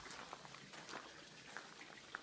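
Quiet footsteps on a dirt hiking trail: scattered soft crunches and ticks over a faint hiss.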